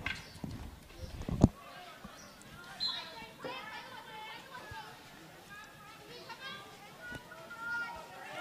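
Players' voices calling and shouting across a field hockey pitch. A single sharp knock about one and a half seconds in is the loudest sound.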